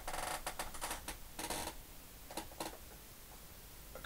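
Handling noise from a large painted canvas being lifted and held up close to the microphone: a run of short rustling, scraping bursts, most of them in the first three seconds.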